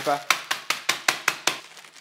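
Wooden rolling pin bashing whole hazelnuts wrapped in baking paper to crush them: a quick run of about eight sharp knocks, roughly five a second, stopping about a second and a half in.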